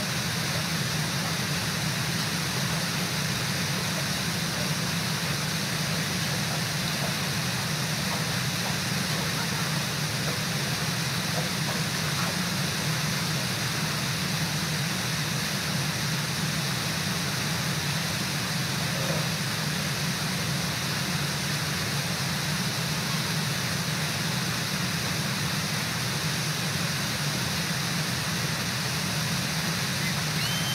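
Steady rush of river water, an even noise with no breaks.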